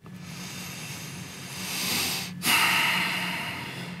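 Breathy, voiceless laughter, swelling over the first two seconds, breaking off briefly, then coming back louder and fading. A steady low hum runs underneath.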